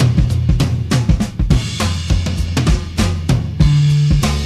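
Late-1960s rock recording in a drum-heavy passage: a drum kit plays a quick run of snare, bass drum and cymbal hits over a sustained bass line.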